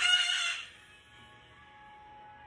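A white cockatoo gives one loud, harsh screech lasting about half a second, right at the start.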